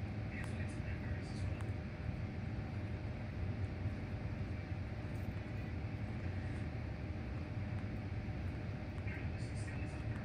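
A steady low rumble with faint, indistinct voices and a few light ticks.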